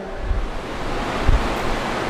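Steady rushing noise with low rumbles about once a second, like wind buffeting an open microphone.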